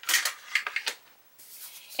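Handling noise of a sheet of cardstock: a rustle and slide at the start, a few light clicks about half a second in, and a softer swish near the end as the paper is moved.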